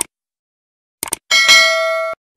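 Mouse-click sound effects, one click and then two quick clicks about a second in, followed by a bright bell chime of the subscribe-button notification bell ringing for most of a second before cutting off sharply.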